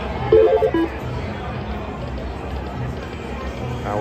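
Buffalo Gold video slot machine giving a short electronic chime, a quick run of stepped beeping tones about half a second in, then its reel-spin music over the steady din of the casino floor.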